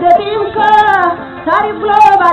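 A song: a high voice singing drawn-out, wavering notes over instrumental music.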